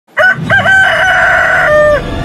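A rooster crowing once, loud: a short opening note, then a long held note that drops lower near the end.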